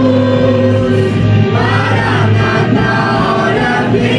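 A group of young singers singing a worship song together into microphones, holding long notes over a steady low accompaniment.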